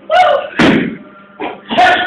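Three loud sudden knocks or thumps in quick succession, the biggest about half a second in.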